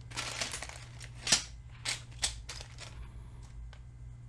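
Small plastic zip-lock bags of Lego pieces crinkling as a hand sorts through them, with sharp clicks of the plastic bricks inside. The loudest click comes just over a second in, and the handling thins out after about three seconds.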